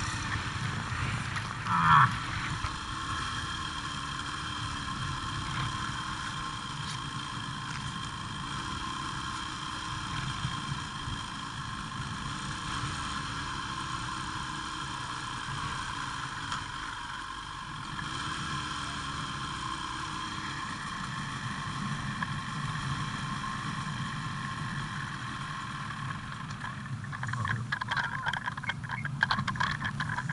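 Ski-Doo snowmobile engine idling steadily at an unchanging pitch, with a short thump about two seconds in. Near the end the sound turns uneven as the sled starts to move off.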